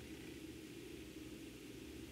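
Faint room tone: a steady low hum with a soft even hiss, with nothing else happening.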